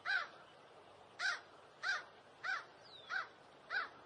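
A bird giving a series of six short calls, each rising and falling in pitch: one near the start, then five at an even pace about every two-thirds of a second. A brief falling whistle from a second bird comes near the end, over faint outdoor background.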